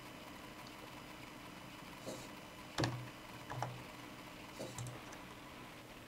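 A few scattered clicks of computer keyboard typing over quiet room hiss, the loudest a little under three seconds in.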